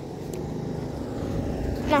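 Lawn mower engine running steadily, getting a little louder near the end.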